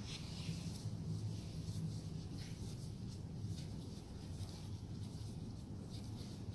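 Faint rubbing of oiled hands stroking over a newborn baby's back during a massage, with a steady low hum underneath.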